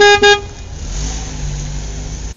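Car horn sounding two quick toots, followed by a low car-engine rumble as the car pulls away; it cuts off suddenly.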